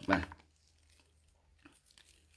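A man's speech trailing off at the start, then near silence broken only by a couple of faint, soft handling sounds of a braided cord being turned in the hands.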